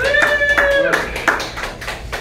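Audience clapping in short quick claps, with one voice giving a long held cheer over it in the first second.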